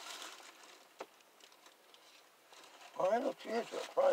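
Faint rustling of a paper fast-food bag and sandwich wrapper being handled, with a single sharp click about a second in. A voice speaks near the end.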